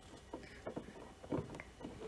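Faint plastic clicks and scrapes of the front indicator bulb holder being twisted into the headlight housing to lock it in place, a few short ticks spread through the moment.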